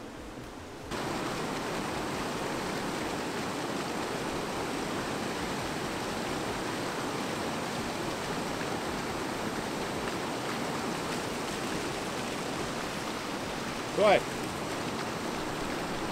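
Steady rushing of a river's white-water rapid, starting about a second in.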